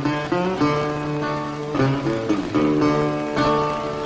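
Solo acoustic guitar playing a blues phrase between sung verses: picked notes ringing over a held low bass note.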